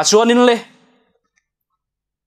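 A man's voice speaking two words, then dead silence, the sound track gated off between phrases.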